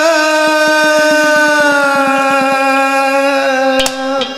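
A man singing a Haryanvi ragni, holding one long note that slides slightly lower. Under the first half of the note runs a quick series of light percussion taps, and a sharp click comes near the end.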